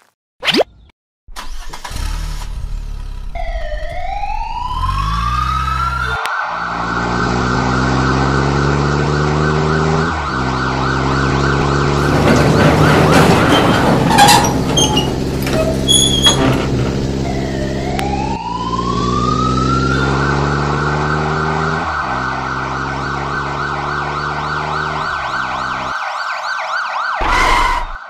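Police siren sound effect: a tone sweeps up and settles into a fast, steady warble, over a low vehicle drone. The pattern starts over about halfway through.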